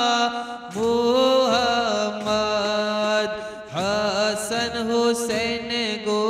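A group of men's voices chanting a Sufi devotional chant in long held, sliding notes, pausing briefly for breath about half a second in and again just past the middle, with daf frame drums struck now and then underneath.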